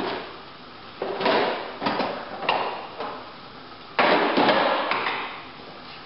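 Hand tools clattering in a toolbox as it is rummaged through for a flathead screwdriver: several sharp clanks about a second apart, the loudest about four seconds in, each ringing on briefly.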